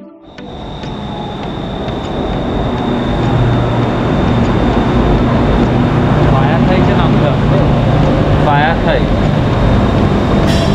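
Bangkok BTS Skytrain train pulling into an elevated station: its rumble and rush grow louder over the first few seconds, then hold steady. A thin, steady high whine runs through it, and there are a couple of brief wavering squeals near the end.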